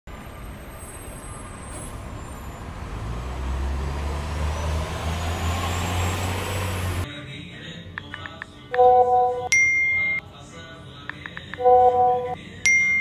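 A swelling rush of noise over a low rumble, rising in pitch, cuts off suddenly a little past halfway. Then come smartphone texting sounds: quick taps, a chiming message alert chord, a higher ping, and more taps with the chime again near the end.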